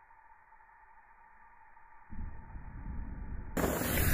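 Intro sound effect: faint steady tones, then about two seconds in a low rumble starts suddenly and swells, joined near the end by a loud rushing noise building up to the intro music.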